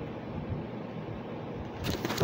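Low, steady background noise with a few faint handling knocks and rustles from a handheld phone being moved about.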